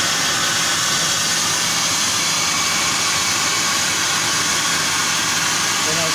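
Apmekanic SP1530 CNC plasma cutting table's torch cutting a metal plate: the plasma arc makes a steady, unbroken hiss with a faint low hum beneath it.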